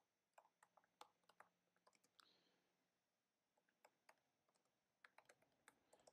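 Faint computer keyboard typing in near silence: scattered soft key clicks in short runs, with a pause of about a second and a half in the middle.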